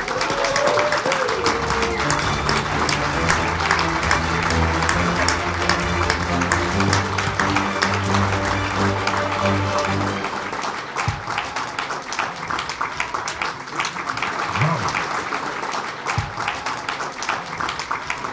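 Audience applauding, dense clapping throughout, over sustained background music notes that fade out about halfway through while the applause goes on.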